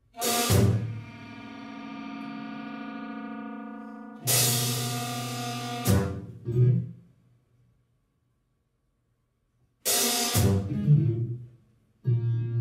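Big band playing loud stop-start ensemble hits, with drum-kit and cymbal crashes on each attack. The first two hits are held as chords that die away, and there are sudden silences between hits, the longest about three seconds.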